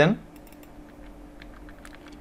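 Faint, scattered clicks of a computer keyboard and mouse, a handful of light taps, over a low steady hum.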